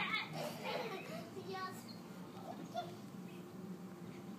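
Young children's voices, babbling and calling out while playing, loudest in the first second or so and then fading to quieter sounds.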